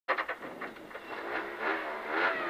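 Peugeot 208 Rally4 rally car's engine idling on the start line, heard from inside the cabin, with a few sharp clicks at the very start.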